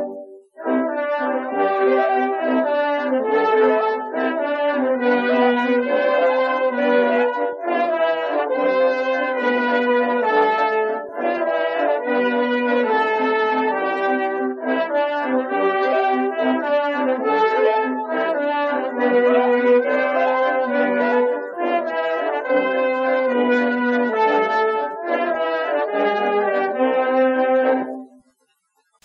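Instrumental background music: a melody of held, pitched notes that breaks off briefly just after the start and then runs on until it stops abruptly.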